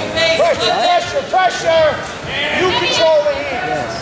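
Several voices shouting over each other, the words indistinct: coaches and spectators yelling during a wrestling bout.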